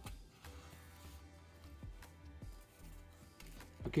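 Soft background music with steady held tones. A few faint taps and rustles come through about a third to two thirds of the way in, from jute twine being pulled through slits in corrugated cardboard.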